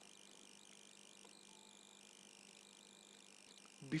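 Near silence: faint steady hiss from the recording microphone with a faint low hum.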